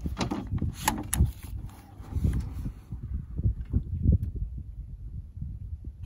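A scoped AR-15 on a bipod being handled and shouldered on a plastic folding table: a few light knocks and clicks in the first second or so. After that comes a low, uneven rumble of wind on the microphone.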